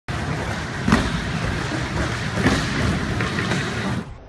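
Skateboard wheels rolling over a wooden skatepark surface, a steady rumble with two sharp knocks, about a second in and again past the middle.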